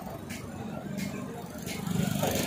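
Street traffic ambience: a low, steady rumble of vehicle engines.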